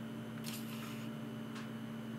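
Quiet room tone with a steady low hum, between stretches of speech.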